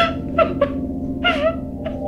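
A woman sobbing: several short, high, wavering crying cries, over a steady held music drone.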